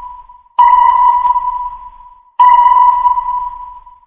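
Sonar ping sound effect: a ping's tail fades out, then two fresh electronic pings sound about two seconds apart, each starting sharply at one steady pitch and fading over about a second and a half.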